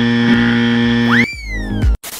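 Steady electronic buzzer tone, a censor bleep covering a word, held for over a second. It is followed by a whistle-like swoop effect that rises quickly and then slowly falls.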